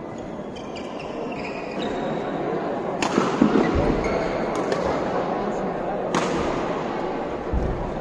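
Badminton rackets striking a shuttlecock in a rally, three or four sharp cracks a second or more apart, each ringing briefly in the hall's echo. A steady murmur of spectators' voices lies underneath.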